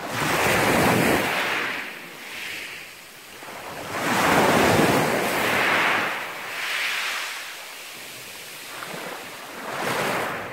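Small sea waves breaking on a pebble beach and washing up over the stones. They come in surges a few seconds apart: one at the start, the loudest from about four seconds in, and a quieter wash toward the end.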